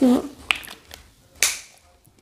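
Pump-spray bottle of aloe vera facial mist giving one short hiss of spray about a second and a half in, preceded by a sharp click about half a second in. A brief voiced sound comes right at the start.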